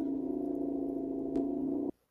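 Steady low electronic drone of several held tones from the security-camera footage's soundtrack, with a faint click partway through. It cuts off suddenly just before the end as the picture goes black.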